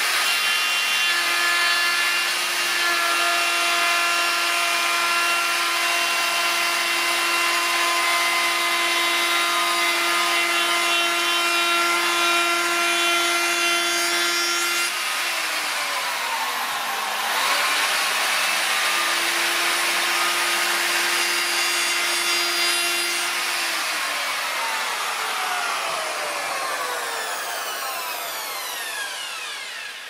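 Erbauer router fitted with a 12.7 mm Trend round-over bit running at speed and cutting a rounded edge into a southern yellow pine shelf: a steady high whine over the rasp of the cut. About halfway through its pitch dips briefly and recovers, and in the last several seconds it is switched off and winds down, the whine falling in pitch and fading.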